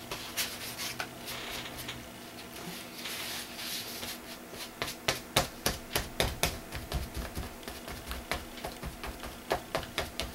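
Sponge pouncer dabbing paint onto a paper journal page: soft rubbing at first, then a run of quick taps, about three a second, through the second half.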